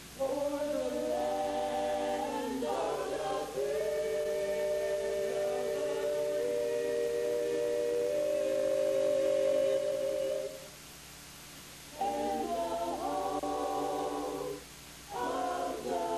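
A choir singing without accompaniment, in phrases of long held chords with short breaths between them, about eleven and fifteen seconds in.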